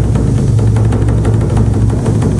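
Korean buk drum ensemble playing rapid, continuous drumming, with a deep rumble from the drums.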